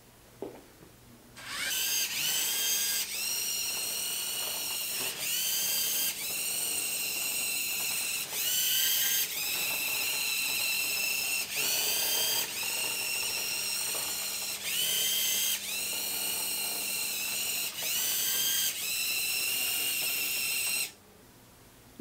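Small electric drive motors and gears of two programmed toy robots, a Lego Mindstorms EV3 and a Dash robot, whining as they drive their moves. The whine runs in a string of one- to two-second stretches, each rising in pitch as the motors spin up for the next command. It starts about a second and a half in and stops shortly before the end.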